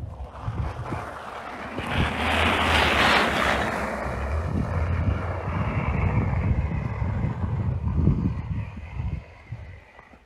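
Pickup truck driving past on a snow-covered road and away: tyre hiss swells to a peak about two to three seconds in, then a low engine and tyre rumble fades out near the end.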